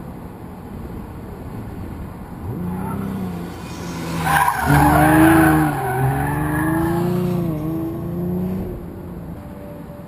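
Autocross car running the course past the microphone, its engine revving up and down as it works through the cones, with tyres squealing. It grows loud about four seconds in, is loudest around five seconds, then fades away.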